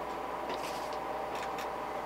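A low, steady room hum with a few thin tones in it, and a few faint clicks about halfway through.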